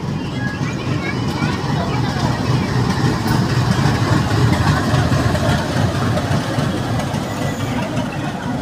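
Steady rumble of a moving DEMU train heard from its open doorway, swelling slightly towards the middle, as it runs close past a freight train's WDG4G diesel locomotive and its wagons on the next track.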